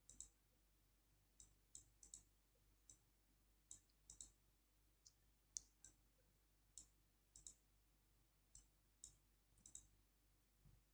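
Faint computer mouse button clicks at irregular intervals, many in close pairs.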